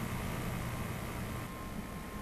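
Steady low hum and hiss, with a faint high steady tone coming in about one and a half seconds in.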